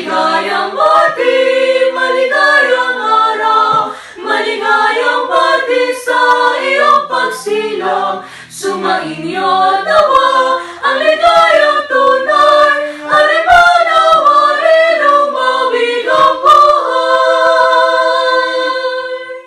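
A small mixed group of young women's and a man's voices singing a cappella in harmony, with no instruments. The song closes on a long held chord near the end.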